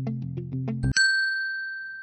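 Background music with a steady beat of short notes stops about a second in. A single bright ding follows and rings on, fading slowly: a transition chime into the solution section.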